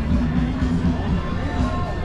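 Music with a strong, steady bass line, with some voices in the background.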